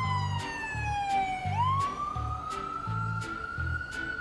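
Ambulance siren on a slow wail: one long tone slides down in pitch for about the first second and a half, then climbs steadily back up. Background music with a steady bass beat plays under it.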